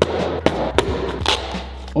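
An axe chopping into a pair of sneakers, with about four sharp strikes in quick succession.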